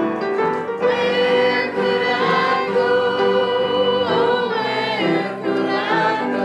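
A small mixed choir of men's and women's voices singing a hymn in parts, holding one long chord through the middle before moving on.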